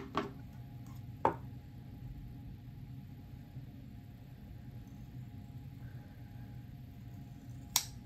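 Kitchen scissors picked up from a tray and snipping into a leathery ball python egg: a few sharp clicks at the start, one about a second in and one near the end, over a steady low room hum.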